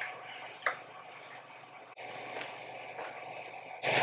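Quiet room tone with a few faint clicks, the clearest about half a second in.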